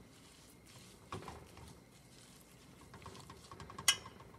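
A metal spoon stirring fresh drumstick leaves in a stainless steel pot: soft rustling and scraping, then a run of light ticks and one sharp clink of the spoon against the pot near the end.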